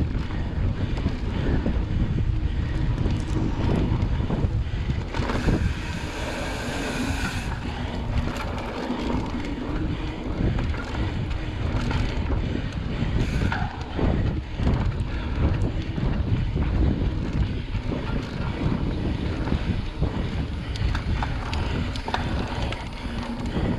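Wind buffeting the microphone of a handlebar-mounted camera on a mountain bike ridden down a dirt trail, over a steady low rumble of tyres on the ground with frequent small knocks and rattles from bumps. A brighter hiss rises for about two seconds around five seconds in.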